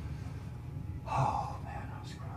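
A man's short, audible breath about a second in, over a steady low room hum.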